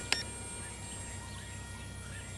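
A short click and high beep from the Hubsan Spy Hawk drone's transmitter as its Enter button is pressed, the signal that the drone's recording is starting. After it, a low steady background with faint, scattered bird chirps.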